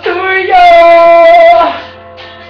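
A man singing one long held note in a high voice. The pitch steps up about half a second in, holds steady for about a second, then fades near the end.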